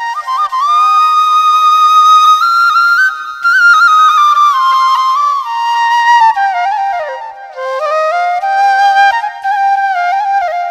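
Background music: a slow flute melody of long held notes joined by slides and ornaments, dipping lower about seven seconds in.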